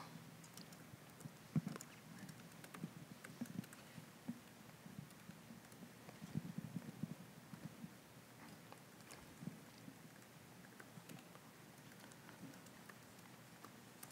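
Faint, sparse clicks of typing on a laptop keyboard, irregular and spaced out, over the quiet background of a hall.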